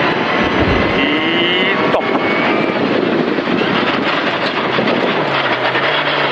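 Skoda rally car's engine at full throttle on a gravel stage, heard from inside the cabin over loud road and stone noise from the tyres, its pitch rising about a second in.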